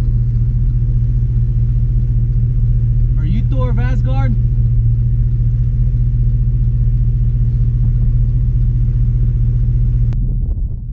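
Steady low rumble of a large SUV's engine and tyres on a gravel road, heard inside the cabin while driving. About three seconds in, a short wavering, voice-like sound rises over it for about a second.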